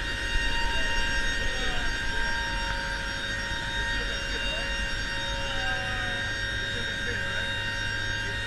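Steady drone of a C-130J's four Rolls-Royce AE 2100D3 turboprop engines and propellers in flight, heard from inside the cargo hold as a deep hum with several fixed, steady tones over it.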